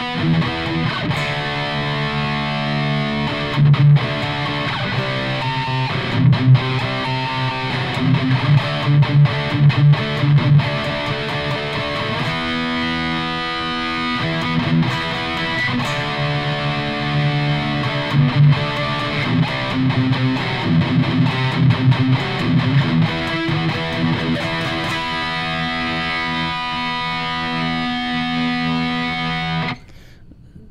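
Distorted electric guitar, a Jackson, playing a chord progression of E minor into D5 and C5 and back to E5, with palm-muted chugging between held chords.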